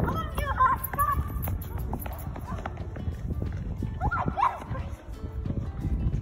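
Children's high voices calling out, with shoes slapping on asphalt as kids hop through a hopscotch grid.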